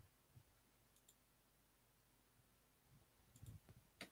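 Near silence with faint computer mouse clicks: a quick pair of clicks about a second in and another pair near the end, with soft low bumps around them.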